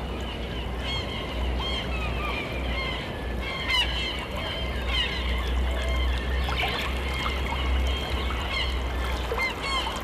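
Birds calling: many short, overlapping chirps and honks that glide up and down in pitch, over a steady low rumble.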